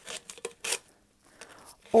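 Utility knife blade slicing through the thin wall of an aluminum soda can: a few short, sharp scraping clicks in the first second, then fainter ones near the end.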